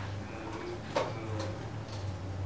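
Steady low electrical hum from a microphone and sound system during a pause in a lecture, with a faint voice in the background and a single sharp click about a second in.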